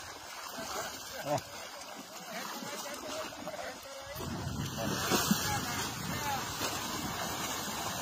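Water splashing and sloshing, getting louder about four seconds in, with faint voices in the background.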